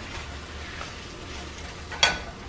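Scrambled eggs sizzling softly in a frying pan turned down to low heat: a steady, even hiss.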